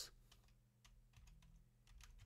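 Faint keystrokes on a computer keyboard: a handful of soft key clicks at uneven intervals.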